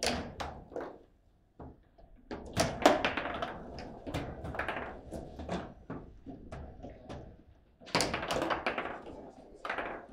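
Foosball table in play: the ball knocked by the plastic players and clacking against the table, with the rods bumping as they are spun and slid. The knocks come in quick, irregular clusters, the busiest from about two and a half seconds in and again near the eighth second.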